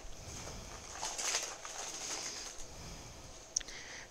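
Faint rustling and crinkling of plastic-packaged craft supplies and ribbon bows being moved around by hand on a table, with a couple of small clicks and knocks.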